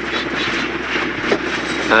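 Steady road traffic noise from motorbikes and cars on a busy city street.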